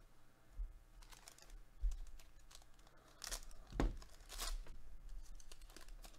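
A foil trading-card pack being torn open and its wrapper crinkled, in several short rasps with a couple of soft knocks against the table.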